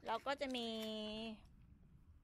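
A woman's voice speaking a few words of Thai, holding the last word out long.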